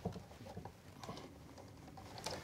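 Faint clicks and scratching of a plastic twist-on wire nut being screwed down over twisted copper wires.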